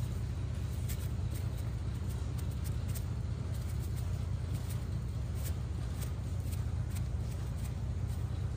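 Steady low rumble of road traffic, with faint scattered ticks as salt is shaken from a plastic bottle into a stew pot.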